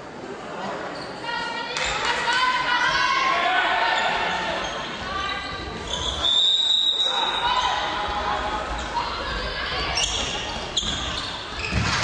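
Players and spectators calling out in an echoing sports hall during handball play, with a ball bouncing on the floor. A high, shrill tone lasts about a second, six seconds in.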